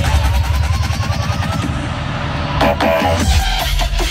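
Loud electronic dance music over a festival stage sound system: a rising synth line over a beat, then a deep steady bass comes in about three seconds in.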